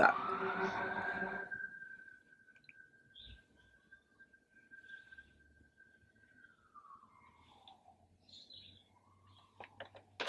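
Video editing transition sound effect: a short pitched tone that rises over the first second and a half and then fades. Near silence follows, with a faint steady high tone that glides downward about seven seconds in.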